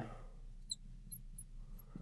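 Marker tip squeaking on a glass lightboard during writing: a few faint, short, high-pitched squeaks.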